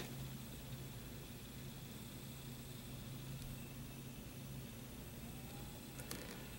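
Quiet room tone: a faint steady low hum under an even hiss.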